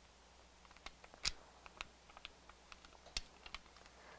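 Faint, irregular crackles and clicks of a heat transfer's carrier sheet being peeled slowly back off a freshly pressed shirt while still warm, with two sharper clicks along the way.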